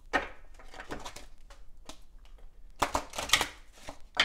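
A deck of astrology cards being shuffled by hand: a run of quick card snaps and clicks, busiest about three seconds in.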